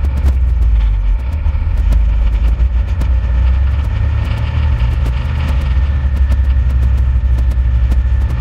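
Snowmobile running at a steady speed: a strong low rumble from the engine and track with a thin steady whine above it, and frequent sharp clicks throughout.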